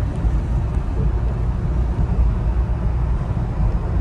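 Suzuki Carry kei pickup on the move, heard inside its small cab: a steady low engine and road rumble. The engine sits directly under the seats.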